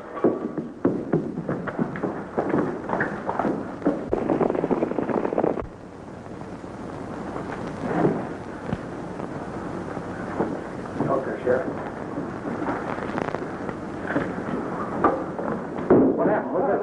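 Commotion on an old film soundtrack: a busy burst of hurried footsteps, knocks and thuds mixed with brief voices, which drops off suddenly after about five seconds to quieter shuffling and a few scattered knocks.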